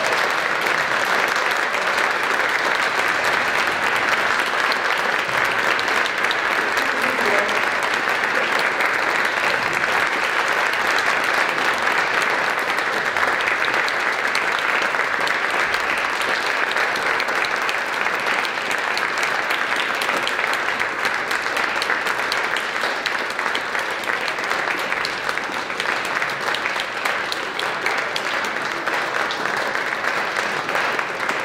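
Audience applauding steadily and at length, as a continuous dense clatter of many hands clapping.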